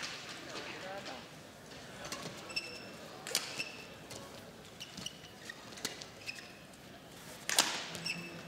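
Badminton rally: a series of sharp racket strikes on the shuttlecock, beginning about two seconds in and coming every second or so, the loudest hit near the end, with short squeaks of shoes on the court between them.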